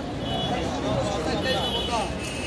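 Indistinct voices talking in the background over a steady low rumble of street noise; no knife strikes on the block are heard.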